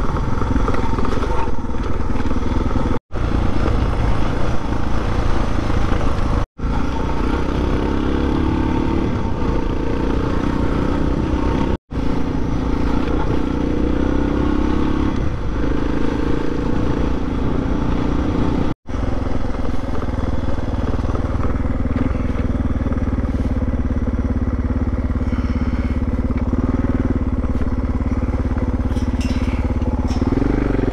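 Dirt motorcycle engine running steadily as it rides a gravel track, heard from the rider's own bike. The sound drops out completely for an instant four times.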